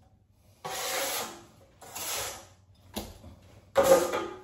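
A broad steel knife scraping wet joint compound across a drywall skim coat, in four separate strokes: two longer ones, a short one about three seconds in, and the loudest near the end.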